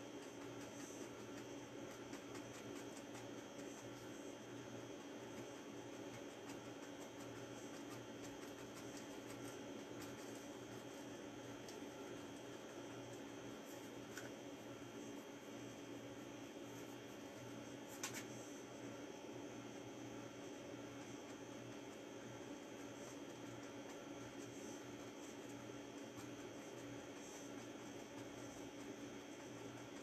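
Quiet steady room hum with faint, scattered soft taps of a fan brush dabbing oil paint onto canvas, and one sharper click about eighteen seconds in.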